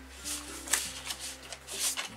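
Sheets of scrapbooking paper rustling as they are handled and flipped over, with a few short swishes, over soft background music.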